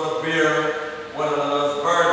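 A man's voice intoning in long, drawn-out phrases held on a nearly level pitch, between speaking and chanting, with a brief dip about halfway through.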